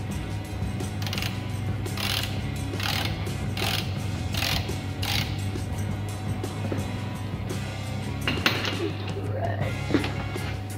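Ratchet wrench with a 17 mm socket clicking in a series of short strokes, about one a second, as it loosens the oil drain plug on a BMW E39's oil pan.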